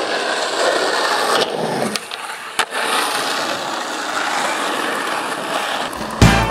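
Skateboard wheels rolling steadily on asphalt. The rolling drops away about two seconds in and comes back after one sharp clack of the board.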